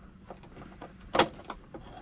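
A sharp plastic click about a second in, with a few faint ticks around it, as a map-light lens cover is pressed up into a truck's overhead console.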